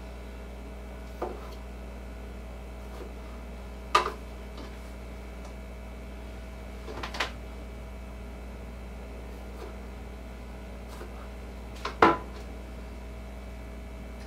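Knife cutting broccoli on a cutting board: four sharp knocks of the blade on the board, a few seconds apart, the loudest about four seconds in and near the end, over a steady low hum.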